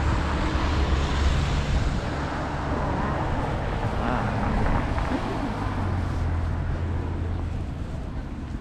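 Road traffic passing close by: cars and a minibus driving past with a low engine rumble, strongest in the first two seconds and again over the last two.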